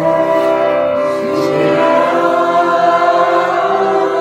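Devotional bhajan singing in praise of Radha: a voice holding long notes over a steady drone-like instrumental accompaniment, with a slide in pitch about a second in.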